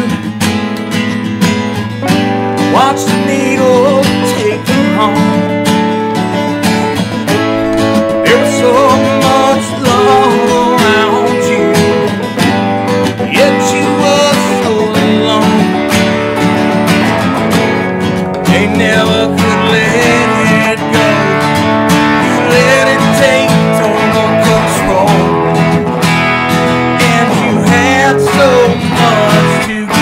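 An acoustic guitar strummed and an electric guitar played together in a live song, running loud throughout.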